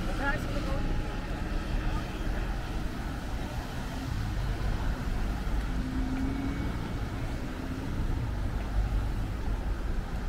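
Street ambience: a steady low rumble of traffic and vehicles, with passers-by talking faintly, mostly right at the start.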